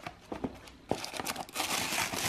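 A few light knocks of a cardboard gift box being opened, then tissue paper crinkling as it is pulled back, growing louder from about a second in.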